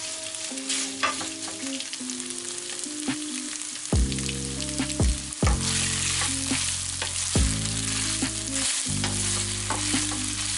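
Leftover spaghetti in tomato sauce and olive oil sizzling as it fries in a nonstick pan, stirred and tossed with a spatula that knocks against the pan a few times.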